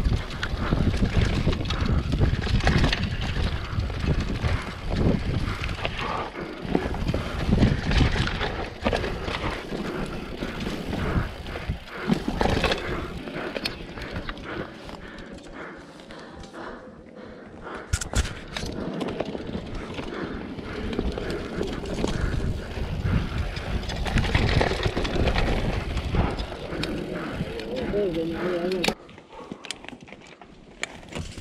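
Downhill mountain bike riding over a rough dirt trail: wind noise on the microphone and tyres on loose dirt, with the bike's chain and frame rattling and knocking over bumps. The noise drops off suddenly shortly before the end as the bike slows.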